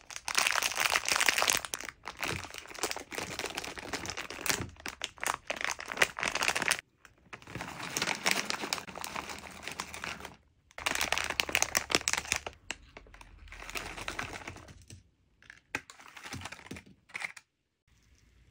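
Crinkling of plastic sweet packets as they are handled, opened and tipped, in several stretches with short pauses between them, with gummy sweets sliding out of a bag onto a wooden platter.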